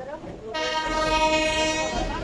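Train horn sounding one long, steady blast. It starts about half a second in and stops just before the end.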